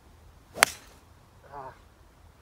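Hickory-shafted driver striking a golf ball off the tee: a single sharp crack about half a second in, with a brief swish of the swing just before it.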